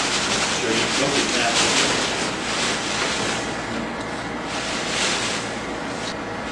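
Dry hay rustling as handfuls are pulled out of a paper sack and dropped into a steel bowl, along with the paper sack crinkling: a rough, uneven rustle that surges and eases.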